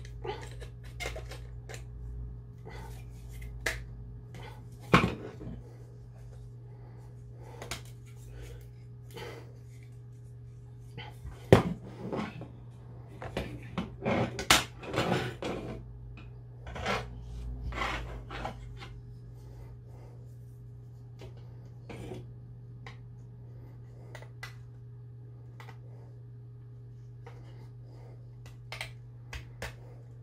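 Hard plastic pieces of a toy diorama being handled and pushed together: scattered clicks and knocks, busiest in the middle stretch, with the sharpest knocks about five and eleven seconds in.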